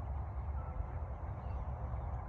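Low, unsteady rumble of wind buffeting a phone microphone outdoors, with a faint thin high note about half a second in.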